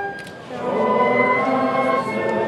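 A crowd singing a hymn together in held notes, with brass band accompaniment. It breaks off briefly between lines about a quarter of a second in, then the next line begins.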